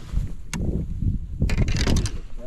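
Wind rumbling on the microphone while a fishing rod is handled on a bass boat's deck, with a sharp click about half a second in and a short clatter of clicks near the end.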